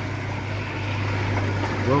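Water churning and trickling through an open EazyPod koi pond filter, over a steady low hum.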